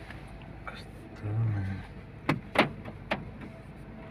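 Car engine idling, heard from inside the cabin as a steady low rumble. A short low hum, like a voice, comes about a second in, and three sharp clicks follow in the second half.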